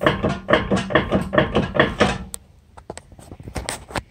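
Raised front wheel of a 2006 Range Rover Sport Supercharged rocked back and forth by hand, clunking about four to five times a second for about two seconds: play in the hub that points to a bad wheel bearing. A few faint clicks follow.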